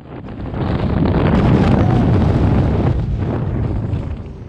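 Air rushing over a body-worn camera's microphone in tandem skydiving freefall, a loud steady roar that builds over the first second and eases off near the end as the parachute opens and the fall slows.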